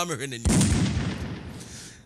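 About half a second in, a man's voice breaks off and a sudden loud blast of noise starts, then dies away over about a second and a half.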